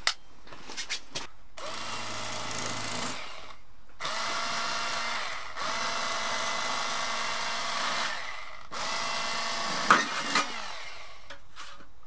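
Bass Pro XPS lithium cordless electric fillet knife running in four steady runs of a couple of seconds each, with brief pauses between, as its blades cut a walleye into fillets.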